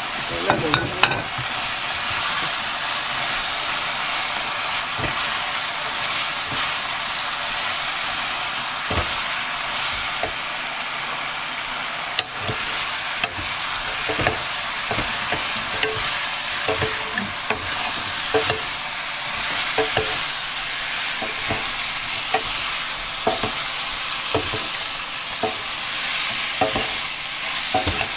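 Fried cutlassfish pieces being tossed through sizzling red chili-paste sauce in a pan. A steady sizzle runs under repeated scrapes and clicks of a metal spoon and a silicone spatula against the pan.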